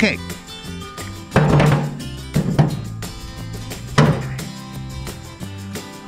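Background music plays throughout. Over it, the metal lid of a Weber Genesis gas grill is lifted off and set down, making three dull thunks in the first four seconds.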